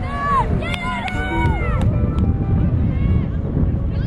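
Several women shouting and cheering in high, rising-and-falling voices, loudest in the first couple of seconds, with a few sharp claps, over a steady low rumble.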